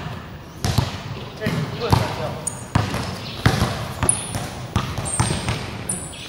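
A basketball being dribbled on a hard court, a bounce about every three-quarters of a second, with a few short high squeaks from about halfway in.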